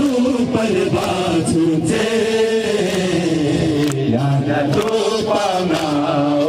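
A crowd of men chanting a Muharram noha, a mourning lament, in unison to a slow, gliding melody, led by a voice over a microphone.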